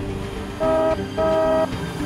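A car horn honking twice, a short beep and then a longer one, over background music.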